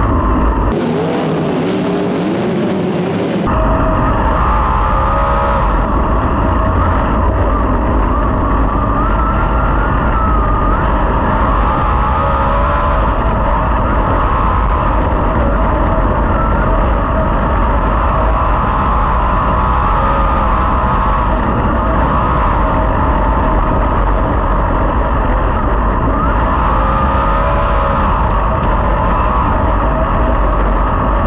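410 sprint car's V8 engine heard from the cockpit, revs rising and falling continuously as the car is driven hard around a dirt oval. About a second in, the sound changes for roughly three seconds to a thinner, hissier mix with less low rumble before the full engine sound returns.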